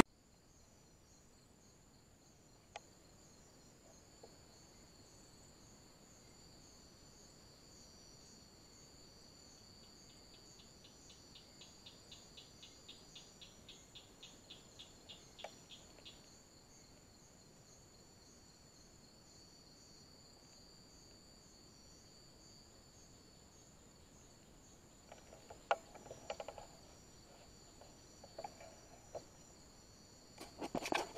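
Faint steady high-pitched chirring of night insects such as crickets, with a pulsing call joining in from about ten to sixteen seconds in. Near the end come a few soft rustles and clicks.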